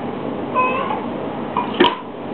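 A short, pitched animal call lasting about a third of a second, about half a second in, over a steady background noise. A sharp click near the end is the loudest sound.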